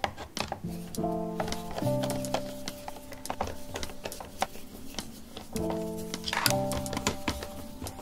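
Background music of sustained chords, over scattered light clicks from a Phillips screwdriver working the screws out of the back of a steering wheel's trim.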